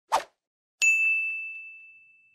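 A brief swish, then a single bright bell-like ding about a second in that rings on and fades away slowly: a chime sound effect over the channel's title card.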